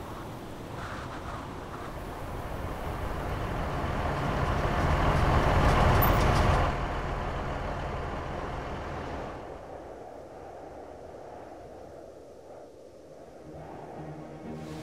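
A large off-road vehicle driving over snowy ground, its rumble growing louder to a peak about six seconds in, then dropping off suddenly and fading away.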